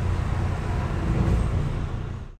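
Steady low rumble of a London bus's engine and running gear, heard inside the bus.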